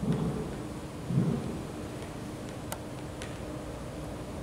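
Two dull, low thumps about a second apart, then two light clicks, as playing pieces are handled on a tabletop board game.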